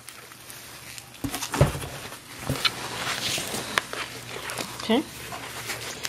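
Large plastic supply jugs being handled in a cardboard box: a heavy dull thud about a second and a half in, a lighter knock a second later, then rustling and clicking of plastic and packing material.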